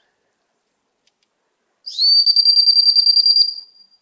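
A dog-training whistle blown once in a long, loud, steady high blast of about two seconds, starting just before the middle, with a fast trill running through it.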